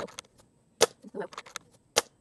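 Umarex Komplete NCR .22 nitrogen-powered air rifle firing: two sharp shots a little over a second apart, the second near the end.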